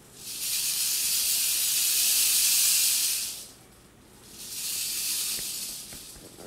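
Mexican west coast rattlesnake hissing defensively while it is restrained and probed: one long, loud hiss of about three seconds, a short pause, then a second, shorter hiss.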